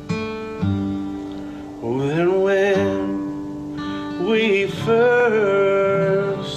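Two acoustic guitars strumming a slow worship song, joined about two seconds in by a man's voice singing long held notes.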